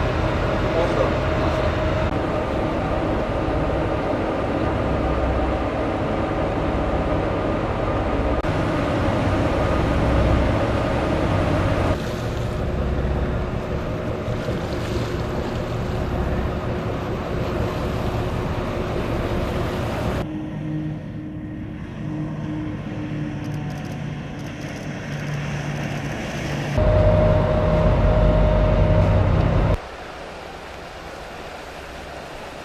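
Engines of rigid inflatable patrol boats running at speed on the water, a steady engine tone with water and wind noise. The sound changes suddenly about 12, 20 and 27 seconds in.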